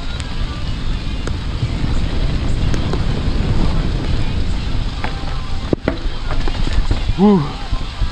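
Mountain bike descending a wet dirt trail: wind buffeting the camera microphone over the rattle of the bike and its tyres rolling over the ground, with a sharp knock just before six seconds in.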